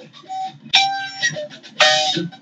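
Electric guitar played in a small room: after a quiet moment, two chords are struck about a second apart and left to ring and fade.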